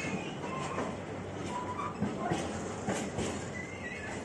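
Empty container flat wagons of a freight train rolling past, with a steady rumble of wheels on rail and a few sharp knocks over the joints about two to three seconds in. Short high squeals from the wheels come through now and then.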